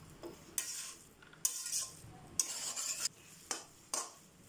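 A steel spatula scraping and stirring in an aluminium kadai, tossing shredded porotta. It makes a series of short metal-on-metal scrapes, about one a second.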